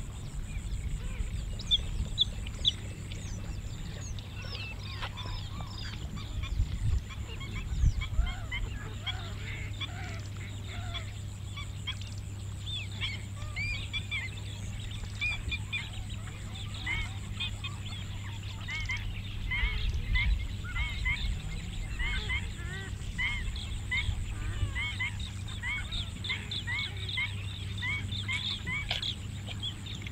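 Many birds chirping continuously in the open, a dense run of short calls that grows busier in the second half, over a steady low hum.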